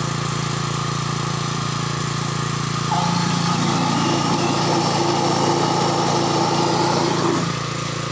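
Small engine-driven water pump running steadily, draining the pool through its blue hose. From about three seconds in until shortly before the end, a higher hum joins it and the sound gets a little louder.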